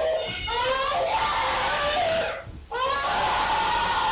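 A young girl screaming and crying out in long, high-pitched wails, shouting in distress as she is pulled away against her will, with a brief break about two and a half seconds in.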